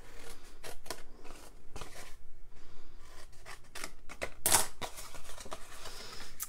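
Scissors snipping through cardstock: a run of short, irregular cuts along the score lines of a paper box blank, with one louder cut about four and a half seconds in.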